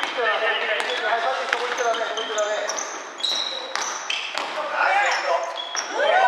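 A basketball bouncing on a wooden gym floor, with repeated sharp thuds, short high sneaker squeaks and players calling out to each other.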